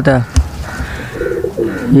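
Domestic pigeon cooing: a low, rapidly pulsing coo lasting just over a second.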